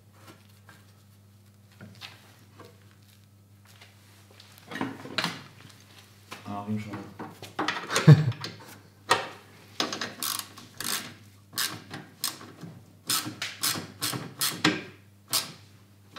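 Hand tools, bolts and metal brackets clicking, knocking and rubbing as a 3 mm aluminium oil catch tank is fitted and tightened in place. The sounds start about five seconds in and come thicker toward the end, over a low steady hum.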